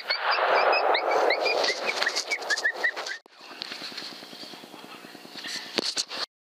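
A coyote hit by the shot, giving a rapid run of short, high-pitched yelps over a loud rustling hiss for about three seconds before it stops. Afterwards there is only a faint low hum.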